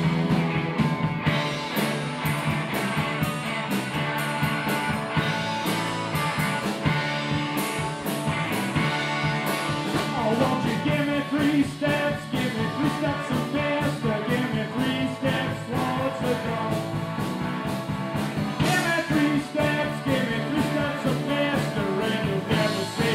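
Live rock band playing: guitar over a steady drum beat, with a man singing into the microphone from about halfway through.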